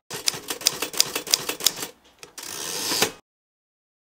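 Logo sting sound effect of typewriter keys clacking rapidly, about eight strokes a second for nearly two seconds. After a short pause comes a rising whoosh that ends in a sharp click, and the sound cuts off abruptly about three seconds in.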